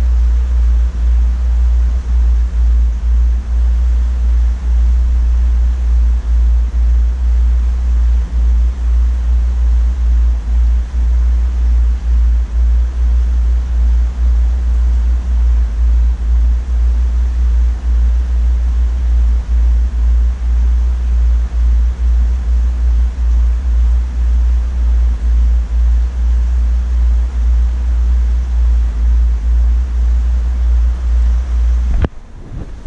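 Steady, loud deep rumble of the tank's water and rising air bubbles, with frequent brief dips in level.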